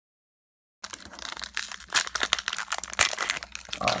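A Pokémon TCG booster pack's foil wrapper being torn open and crinkled, a dense run of crackling and tearing. It starts suddenly about a second in, after dead silence, and the pack opens easily.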